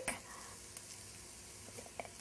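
Sliced onions frying in oil in a sauté pan: a faint, steady sizzle, with a small tick a little before the middle and another near the end.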